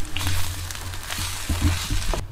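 Chorizo, egg and potato filling sizzling in a skillet on a camp stove as a spatula stirs it, with a few light knocks of the spatula in the second half.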